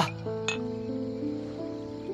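Two small ceramic wine cups clinking together once in a toast, about half a second in, over soft background music with long held notes.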